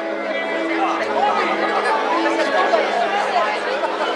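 Live rock band's instrumental intro, with electric guitar and held chords over the stage PA, and audience members chatting close to the microphone.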